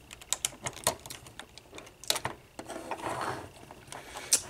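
Small hard plastic parts of a vintage Transformers toy clicking and tapping as they are handled and a fist is pushed onto the figure's arm: a string of irregular light clicks.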